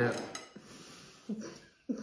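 Faint scraping and small clinks of a needle picking at dalgona honeycomb candy on a ceramic plate, with two short sharp sounds in the second half.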